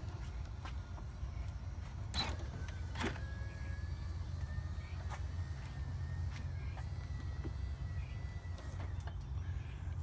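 PowerFold third-row seats of a 2016 Ford Explorer Platinum folding themselves flat under electric power. There are a couple of clicks about two and three seconds in, then a faint motor whine for about five seconds, all over a steady low hum.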